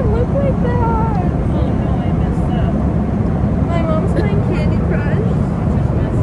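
Steady low rumble of an airliner cabin, with a baby's high cry rising and falling over it at intervals.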